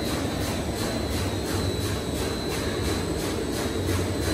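Paper tube (core) making machinery running in the workshop: a steady low mechanical rumble with a thin high whine and a faint regular ticking above it.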